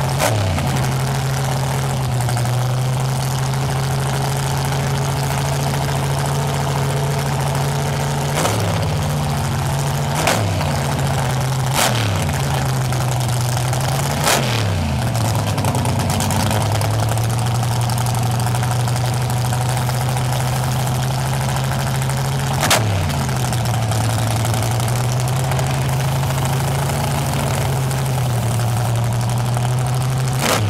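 Race-car V8 in a 1980s Chevrolet Monte Carlo drag car idling loudly, with the throttle blipped five times: each a sharp, short rev that drops straight back to idle.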